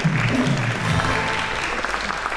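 Studio audience applauding, with music playing underneath.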